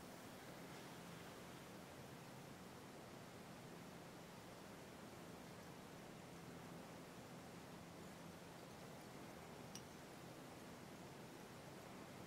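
Near silence: room tone with a faint low hum and a single small tick late on.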